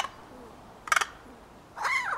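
American crow calling: two short, rapid clicking rattles about a second apart, then a longer call that falls in pitch near the end.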